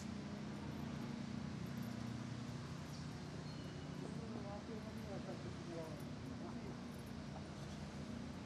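Outdoor ambience: a steady low hum with faint distant voices around the middle.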